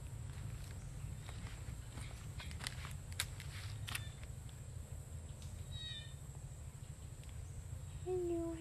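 Footsteps and rustling as someone walks through garden plants, picked up on a clip-on lapel microphone: scattered sharp clicks over a steady low rumble. A brief high chirp about six seconds in.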